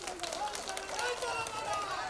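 Crowd of villagers with many voices talking and calling out at once, overlapping, at a moderate level.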